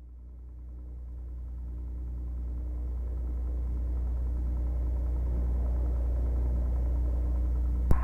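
Piper single-engine light aircraft's piston engine idling on the ground, a steady low drone heard in the cockpit, fading in over the first few seconds. A single click near the end.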